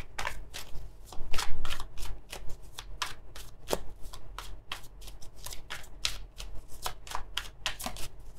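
A deck of tarot cards being shuffled by hand: a rapid, irregular run of soft card clicks and slaps.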